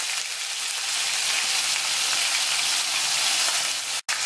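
Chopped onions and sweet peppers frying in hot oil on medium heat: a steady, even sizzle.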